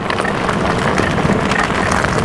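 Tyres of a Lectric XP Lite e-bike rolling over loose desert gravel: a steady crunching crackle.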